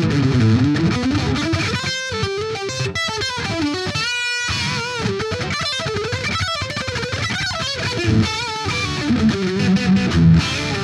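Distorted electric guitar through a Monomyth-modded Marshall Silver Jubilee valve amp, playing a single-note lead line with string bends and wide vibrato, including a long held note about four seconds in.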